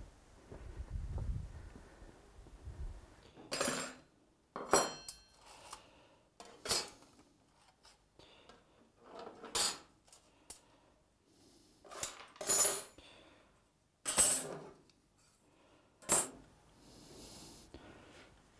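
Loose metal parts clinking against each other in a string of separate sharp knocks at irregular gaps, about eight in all, some with a brief metallic ring. The knocks start after a low handling rumble of about three seconds.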